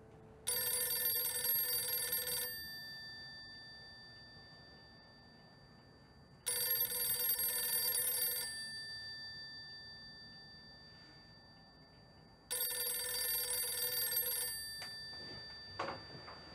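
A telephone bell ringing three times, each ring about two seconds long and the rings about six seconds apart, the bell's tone hanging on briefly after each ring.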